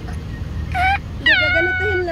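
High-pitched, drawn-out vocal cries: a short one just before the one-second mark, then a longer one that drops in pitch and then holds steady.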